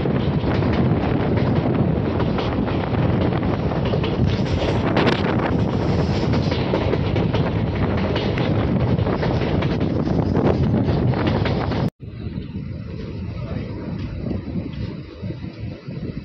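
Passenger train heard from on board while running, with wind buffeting the microphone over a loud, steady rumble. About twelve seconds in, the sound cuts off abruptly and gives way to a quieter rumble.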